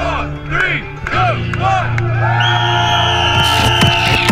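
A crowd of runners whooping and cheering over loud music with steady bass notes. About a second in, the cheers thin out and the music goes on with long held electronic tones.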